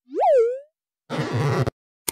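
A cartoon 'boing' sound effect, one springy pitch sliding up and then back down, followed about a second in by a short burst of laughter.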